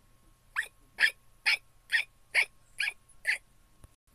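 A person voicing a quick series of seven short, high-pitched "hic" hiccup sounds, about two a second, for a cartoon character's hiccups.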